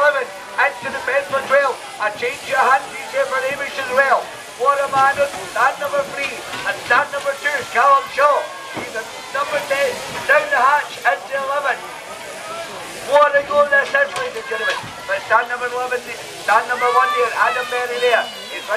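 A man's fast, unbroken commentary, loud throughout with only brief pauses. A faint steady hiss lies beneath it.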